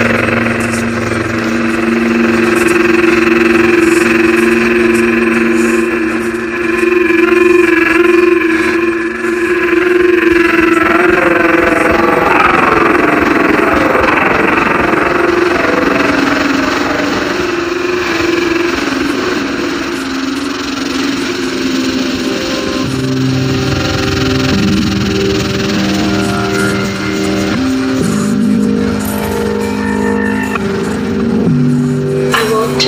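DJ mix played from turntables and mixer: electronic music of long held tones, with a sweeping swirl of sound near the middle, then a run of shifting sustained notes.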